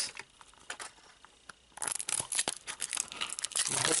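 Plastic wrapper being peeled and torn off a small capsule by hand: a few light clicks at first, then a dense run of crinkling and tearing from about two seconds in.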